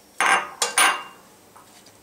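A spatula scraping and stirring through a dry toasted-breadcrumb mixture in a metal bowl: two quick strokes within the first second.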